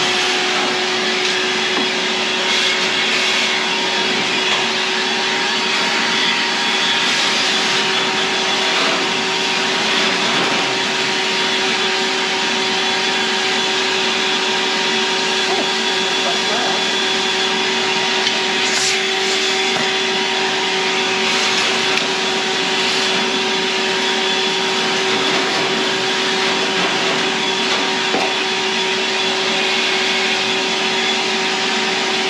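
Canister vacuum cleaner running steadily with a constant hum while its hose nozzle sucks out the shelves of a rolling cart.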